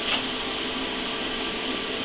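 Steady background hum of a running fan, with a faint constant whine.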